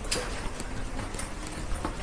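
Footsteps on polished stone stairs: a few soft, irregular knocks over a faint low rumble.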